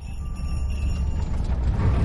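Deep rumble of a group of motorcycle engines, the fast pulsing of their firing growing steadily louder as they approach. Faint chiming music fades out under it near the start.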